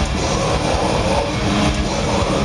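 Live death metal band playing loud, heavily distorted guitars over fast, dense drumming, with no break in the music.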